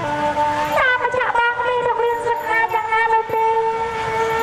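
A woman singing a lakhon basak (Khmer Bassac opera) song through a stage microphone, with long held notes and a sliding run about a second in, over a reedy-sounding instrumental accompaniment.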